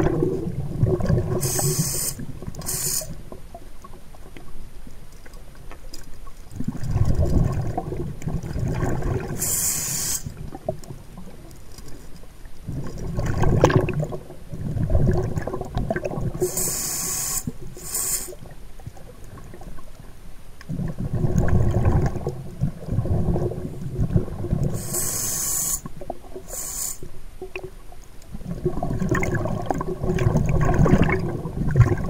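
Scuba diver breathing underwater through a regulator: a short hiss on each inhale alternates with a longer, low bubbling rumble of exhaled air, about one breath every eight seconds.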